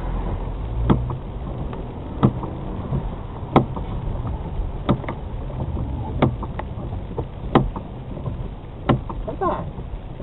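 Car cabin noise while driving slowly on a wet road in rain, with a low steady rumble and the windscreen wiper clicking sharply about every second and a third.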